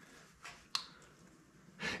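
Quiet shop room tone with a soft scrape and one sharp click as a 6-inch three-jaw lathe chuck is turned by hand, then an intake of breath near the end.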